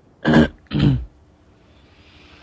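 A man clears his throat twice: two short, loud hacks about half a second apart, picked up close on a headset microphone.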